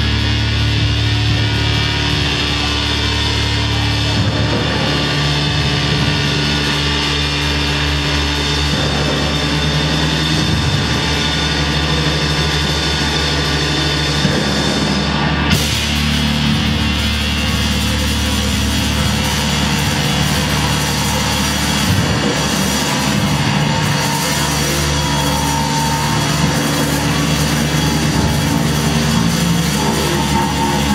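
A live heavy instrumental noise-rock trio plays loud and dense: distorted electric guitar, a drum kit and a noise keyboard. About halfway through the sound turns brighter and harsher.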